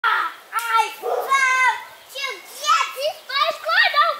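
Young children shouting and squealing while they play, a quick string of short, high-pitched calls, some sliding up and down in pitch.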